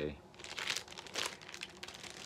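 Vinyl LP jacket in a plastic outer sleeve crinkling and rustling in irregular bursts as it is handled and set down.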